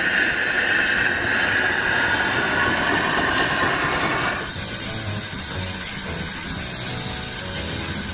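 HG 4/4 rack steam locomotive blowing a steady whistle for about four and a half seconds over a loud hiss of steam. The steam hiss carries on after the whistle stops.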